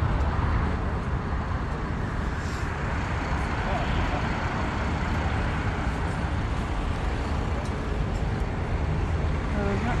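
Steady urban road traffic noise, an even rumble of passing cars with no single vehicle standing out.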